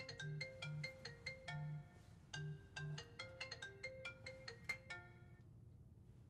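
Mobile phone ringtone: a repeating melody of short struck notes over a low pulsing beat, cutting off about five and a half seconds in.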